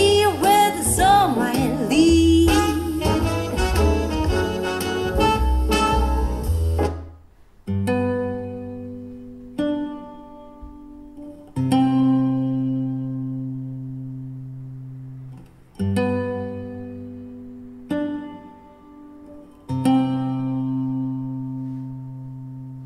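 Music played through home-built home theatre speakers, a centre channel with front left and right speakers and a small subwoofer. For about seven seconds a song with a singer and full band plays, then stops suddenly. A slow guitar track follows, with single chords struck every two seconds or so, each ringing out and fading.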